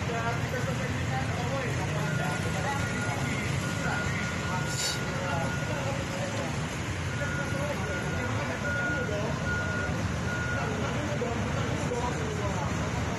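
Indistinct voices of a crowd over the running noise of vehicles in the street. From about two seconds in, a steady high electronic beep sounds, first held for a few seconds and then in shorter on-off beeps.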